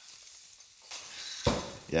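Faint rustle and slide of a padded gig bag being pulled off an electric guitar. It ends in a sudden louder knock about one and a half seconds in.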